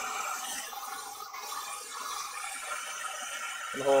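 Dyson hair dryer with a diffuser attachment blowing steadily on a low speed setting and lowest heat, a continuous airy hiss as the diffuser is held against the hair.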